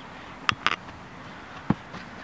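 A few short thuds of a football being struck during goalkeeper drills. Two light knocks come about half a second in, and a stronger, deeper thud comes near the end.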